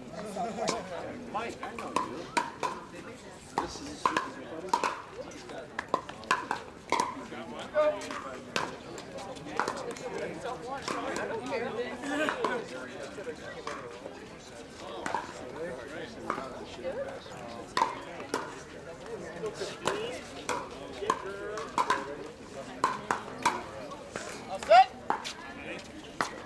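Pickleball paddles striking a hard plastic ball: sharp pops in runs of rally hits about a second apart, the loudest near the end, over steady crowd chatter.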